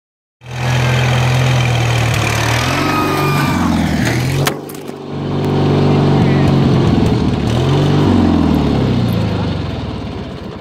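Riding lawnmower's small engine running hard, its pitch rising and falling as it revs. A single sharp knock comes about four and a half seconds in, the engine dips briefly and then runs on, fading near the end.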